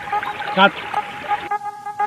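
Mostly speech: a man calls out briefly, over background music.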